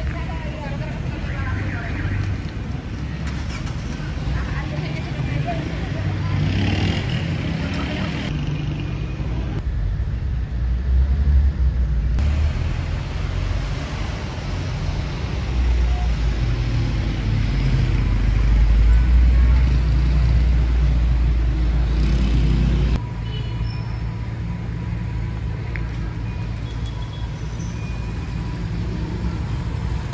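Street traffic noise: a continuous low rumble of cars and other road vehicles, with a heavier stretch past the middle that cuts off suddenly.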